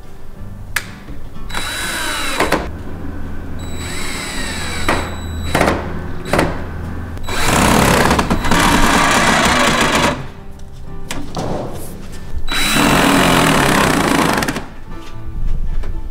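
Cordless drill-driver driving screws into pre-drilled wooden coop panels, in several separate runs, the two longest and loudest in the second half.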